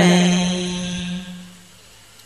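A voice chanting Hòa Hảo Buddhist scripture verse ends a line on a long held note that fades away over about a second and a half, leaving a quiet pause.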